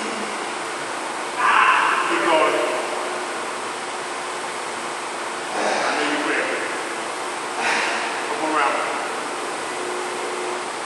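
A steady hiss with three short bursts of indistinct voice, the first and loudest about a second and a half in, the others near the middle and later.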